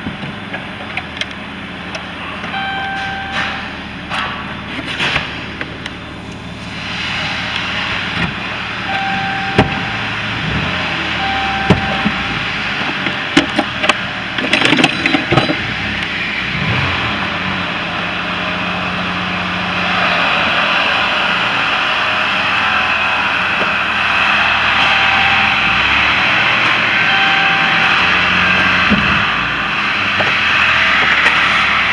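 Inside the cabin of a 2016 Dodge Grand Caravan with its 3.6-litre V6 running in Drive: steady engine and road noise that grows louder about two-thirds of the way in. Scattered knocks and a few short beeping tones sit on top of it.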